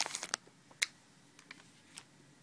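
Foil Magic booster pack wrapper crinkling and crackling as it is handled and cut open. A cluster of sharp crackles comes first, then one more crackle, then a few faint ticks.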